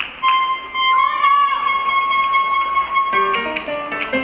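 Opening of a salsa track over the sound system: one long held high note, then quicker band notes from just after three seconds in.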